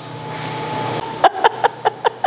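A person laughing in a quick run of short bursts, starting about a second in, over a steady low hum.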